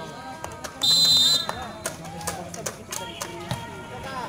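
A referee's whistle blows one short, loud, shrill blast about a second in, the signal for the serve, over spectators' chatter.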